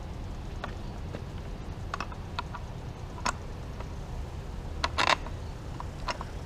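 Scattered small clicks and knocks of hand-guard mounting hardware being handled and fitted at a motorcycle's handlebar end, the loudest cluster about five seconds in, over a steady low background hum.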